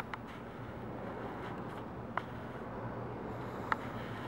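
Quiet workshop room tone: a steady low hum, with two faint clicks, one about two seconds in and one near the end.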